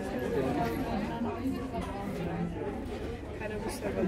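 Indistinct chatter of people talking, with no clear words.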